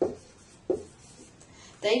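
Dry-erase marker writing on a whiteboard: two short knocks of the marker tip against the board, about 0.7 s apart.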